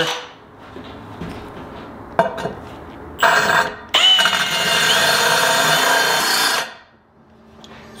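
A drill spinning a tile hole-saw bit, grinding a wet circular hole into a floor tile. A short burst comes about three seconds in, then a steady whine of drilling for nearly three seconds that cuts off abruptly.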